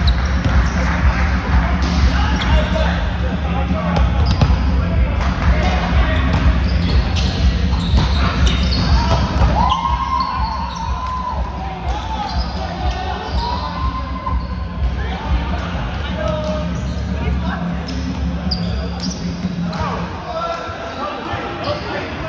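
A volleyball being hit and bouncing on a hardwood gym floor, sharp knocks that ring in a large echoing hall, over a steady low hum and the chatter of players.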